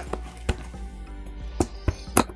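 Knife cutting through the tape of a cardboard box to slit it open, giving three sharp clicks and scrapes, over background music.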